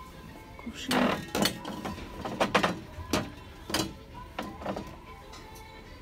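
Glass vases and bottles clinking against each other and the glass shelf as they are handled: about eight sharp clinks with a short ring, a few of them close together.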